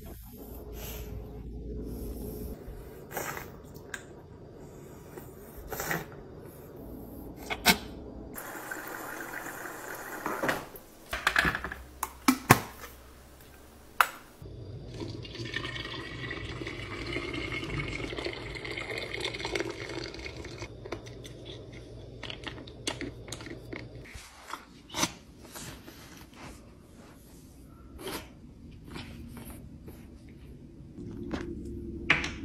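Water poured from a kettle into a knit-covered hot-water bottle, a steady pouring stream lasting several seconds whose pitch slowly rises as the bottle fills. Before it come scattered sharp clicks and knocks, the loudest about ten to twelve seconds in.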